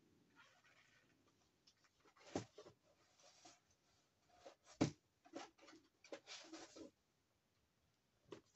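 Craft supplies being rummaged and handled: faint rustling and small knocks, with two sharper knocks about two and a half and five seconds in.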